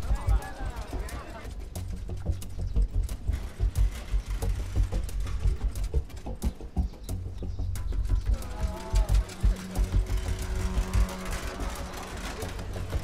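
Background drama score of low, irregular drum beats, joined by sustained held notes about eight and a half seconds in, with indistinct voices at times.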